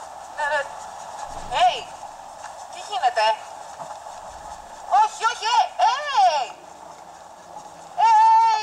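A young woman's high, wavering vocal cries in short bursts, rising and falling in pitch.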